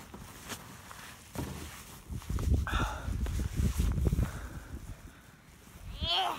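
Snow crunching and scuffing as a child crawls through a trench dug in deep snow, in uneven bursts that start about a second and a half in, are busiest in the middle and die away near the end.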